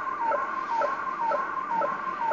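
Kenwood R-2000 shortwave receiver playing a digital image-transmission signal through its speaker: a warbling tone that dips and rises in pitch about twice a second in an even rhythm. The operator takes it for a weather-satellite image being sent.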